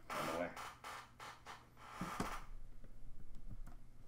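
Hands handling plastic puzzle tiles and strings on a desk: a rustle for the first two seconds or so, then a few light clicks and taps.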